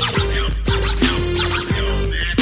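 Hip-hop track playing with a steady beat and turntable scratching, no rapping.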